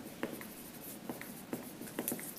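Dry-erase marker writing on a whiteboard: a series of short, irregular strokes.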